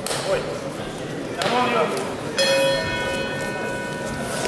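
Ring bell struck once a little past halfway through and left ringing with a steady, many-toned ring: the signal that starts the bout. A man's voice calls out shortly before it.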